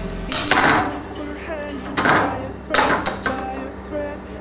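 Carbon-fibre quadcopter frame and parts clattering against a wooden tabletop as they are handled and set down, in three sharp bursts of rattling clicks about half a second, two seconds and nearly three seconds in.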